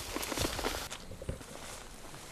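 Footsteps: a quick run of steps and knocks that drops off abruptly about a second in, leaving a few fainter steps.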